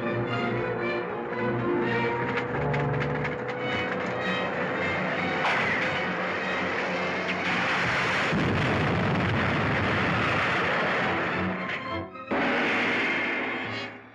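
Dramatic orchestral serial score. About halfway through it is swamped by a loud, dense noise effect lasting several seconds, like an explosion or crash. After a short break near the end, a second burst of noise follows.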